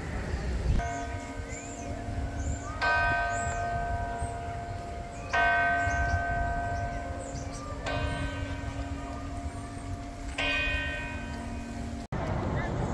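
Church bell of Saint-Eustache tolling slowly: five strokes about two and a half seconds apart, each ringing on into the next.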